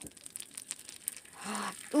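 Faint crackling of a chicken eggshell being pried apart by hand over a pan of melted butter, then a short soft rush near the end as the contents drop into the pan.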